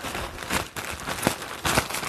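Fabric of a costume gown and petticoat being handled, a run of uneven rustles and crinkles.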